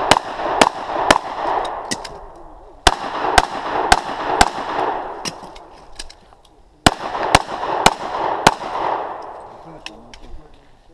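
Handgun fired in three quick strings of about four shots each, the shots roughly half a second apart and a pause of about two seconds between strings, each string trailed by a lingering echo.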